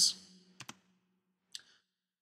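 Two sharp clicks about a tenth of a second apart, a computer mouse button clicking to advance a presentation slide, after the trailing end of a man's spoken word; a short faint hiss follows.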